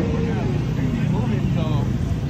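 Motorcycle engines running at a group ride meet: a steady low rumble, with a tone that sinks in pitch during the first second, under background voices.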